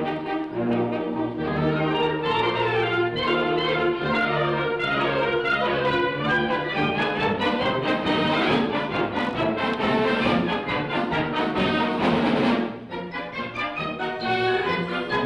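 Concert wind band (harmonie orchestra) playing, with flutes, clarinets and brass together. The music swells to its loudest about twelve seconds in, then drops back suddenly.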